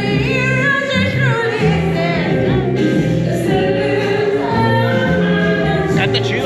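A woman singing into a handheld microphone through a sound system over musical accompaniment, her melody held in long notes with vibrato.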